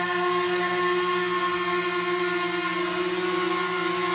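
DJI Mavic Mini drone hovering in place, its four propellers and motors giving a steady whine with several constant pitches. The motors have motor caps fitted and are running evenly, with no vibration.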